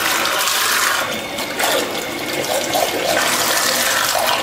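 A small electric underwater thruster running submerged in a stainless steel sink, churning and splashing the water in a steady rush.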